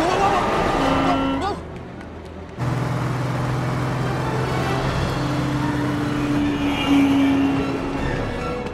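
Action film soundtrack: voices crying out with gliding pitch in the first second and a half, then a car engine running steadily from about two and a half seconds in. A held higher tone joins the engine over the last few seconds.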